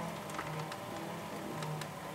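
Bicycle tyre spinning a treadmill motor through a friction drive as it is pedalled, generating charge for the battery: a steady whir with a low hum that swells and fades about once a second.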